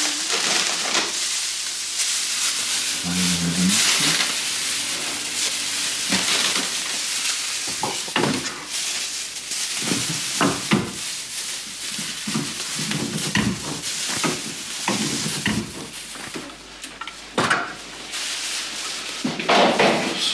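Plastic bags crinkling and rustling as frozen bagged specimens are handled in a chest freezer, with scattered sharp knocks.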